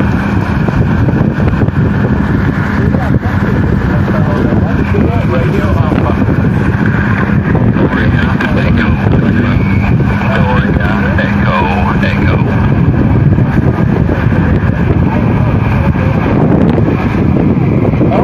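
A Tecsun PL-660 portable shortwave receiver's speaker plays a weak single-sideband amateur radio voice on the 20-metre band, buried in heavy static and band noise. A steady low tone runs under it and stops about twelve seconds in.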